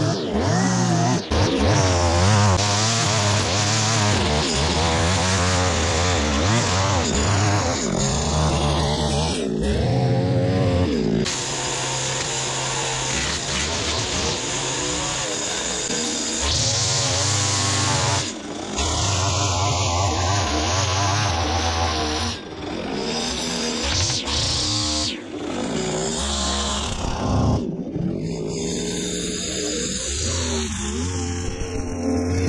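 Petrol string trimmer running and cutting grass, its engine revving up and down with a few brief drops in throttle.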